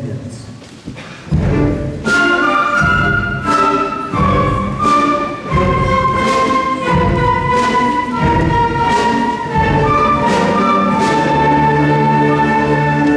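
Middle school concert band playing, entering about a second in with full ensemble sound: accented low brass and drum hits repeat under a melody that steps downward.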